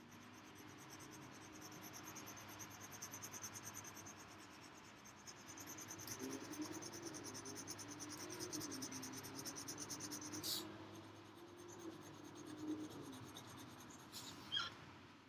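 Colored pencil scratching on paper in quick, rhythmic back-and-forth shading strokes, with a single sharper tick about ten seconds in.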